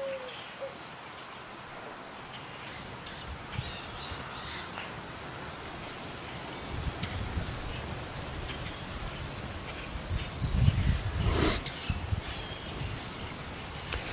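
Wind buffeting the microphone outdoors, a low rumbling rush that gusts harder about halfway through and peaks near the end.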